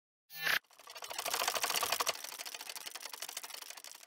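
Logo-animation sound effect: a brief burst of noise that swells and cuts off suddenly, then a rapid run of fine clicks that peaks about a second and a half in and fades away.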